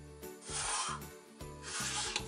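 Pencil drawn along the edge of a plastic set square on paper: two strokes of about half a second each, one just under a second in and one near the end.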